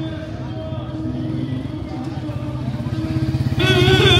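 Street ambience: a low, steady motor-vehicle engine rumble with people talking around. About three and a half seconds in, loud singing with music starts.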